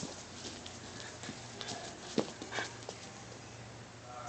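A few faint, scattered taps and knocks, with one sharper click about two seconds in: an orange plastic cup held over a bulldog puppy's muzzle bumping and rattling as she walks on foam mats.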